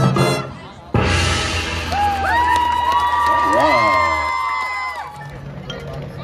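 Marching band music: a brass phrase fades, then about a second in a loud hit with a crash sets off held notes that swoop up and down in pitch, dying away around five seconds in.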